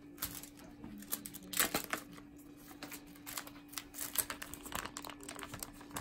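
A clear plastic adhesive drape for a wound VAC dressing crinkling and crackling in irregular snaps as it is handled and peeled from its backing.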